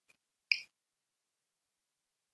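Near silence with one short, sharp click about half a second in.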